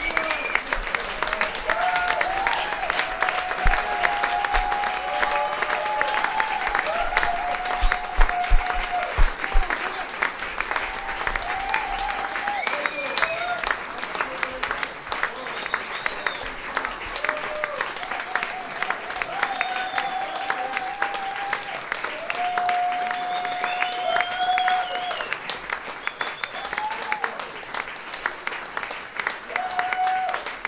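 Audience applauding after a live acoustic string set: dense steady clapping with voices calling out over it, the applause slowly thinning toward the end.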